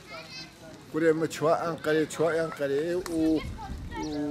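A man speaking in bursts, with children's voices in the background and a brief high child's voice at the start.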